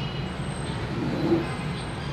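Steady low rumble of vehicle noise in the background, with a slight swell just past the middle.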